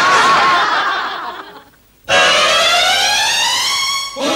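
Canned laughter (a laugh track) fading out over about two seconds. After a brief break, a synthesized tone with many overtones sweeps steadily upward for about two seconds, as a transition sting between skits.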